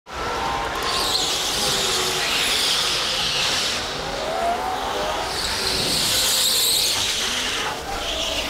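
Indoor go-karts racing, tyres squealing on the smooth track in two long stretches. Between the squeals there is a rising motor whine.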